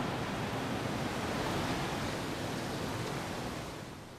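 Steady rushing of water pouring over a dam spillway into the turbulent tailwater below, fading down near the end.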